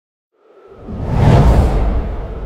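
Whoosh transition sound effect with a deep low rumble, rising out of silence about half a second in, peaking around a second and a half in, then beginning to fade near the end.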